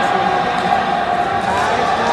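Crowd chatter and indistinct voices in a large, echoing hall, a steady background din with no single voice standing out.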